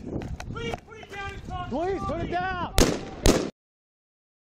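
Two gunshots about half a second apart, a little under three seconds in, after which the sound cuts off abruptly.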